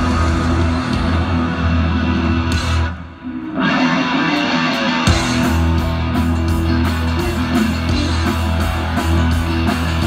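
Live rock band playing on an outdoor stage, guitars and a heavy low end through the PA, heard loud and full. The music drops away briefly about three seconds in, then comes back in strongly with a steady beat.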